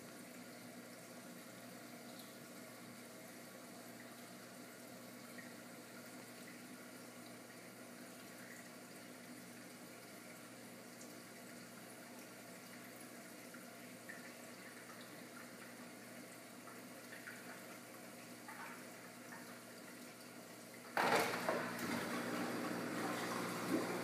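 Reef aquarium sump pumps humming steadily with water moving in the sump. About three seconds before the end, the sound jumps sharply louder into a steady rush of water as the return pump and new-saltwater pump of the automatic water change switch on.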